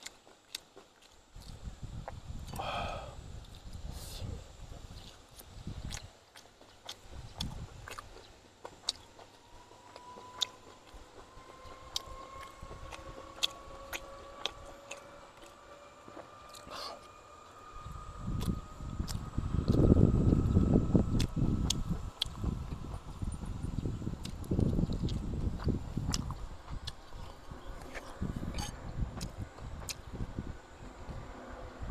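A man chewing and smacking mouthfuls of boiled pork close to the microphone, with many short sharp clicks scattered through. The chewing is heaviest and loudest from a little past halfway.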